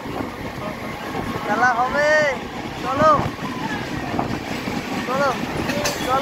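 Steady running noise of a local EMU train at speed, with the Vivek Express alongside on the next track and wind on the microphone. Short rising-and-falling shouts come from passengers, loudest about two and three seconds in and again near the end.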